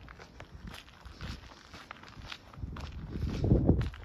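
Footsteps of a person walking at a steady pace on a paved path, with a louder low rumble for about a second near the end.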